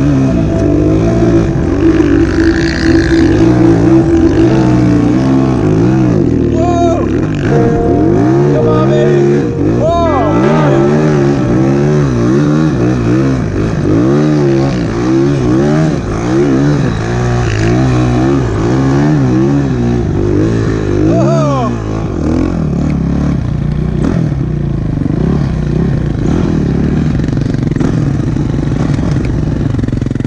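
Single-cylinder four-stroke engine of a 2007 Yamaha YZ450F snowbike, ridden through deep powder, its revs swinging up and down about once a second. In the last several seconds it settles to a steadier, lower note.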